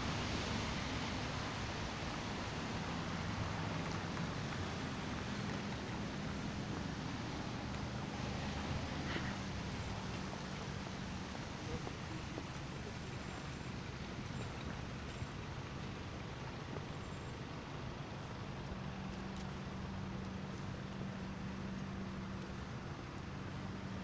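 Steady city road traffic: cars moving along a wet multi-lane street, with tyre hiss and a low steady engine hum.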